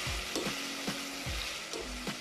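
Leek frying in hot oil in a pan, sizzling steadily while it browns, with a utensil stirring and knocking against the pan about twice a second.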